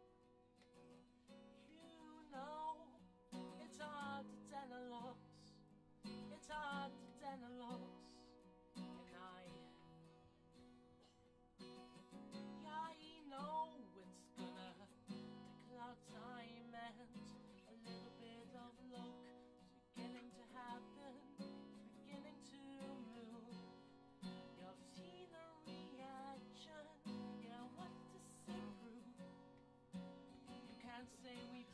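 Cutaway acoustic guitar strummed and picked, with a man singing over it in phrases that break off between lines of the song.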